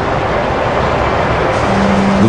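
Steady rushing roar of Niagara Falls, a great mass of water pouring over the drop.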